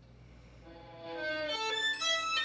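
Solo violin, bowed: very soft at first, then notes come in about two-thirds of a second in and grow louder, shifting pitch every fraction of a second.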